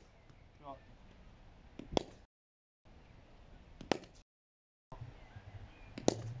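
Cricket bat striking drop-fed balls: two sharp knocks about two seconds apart.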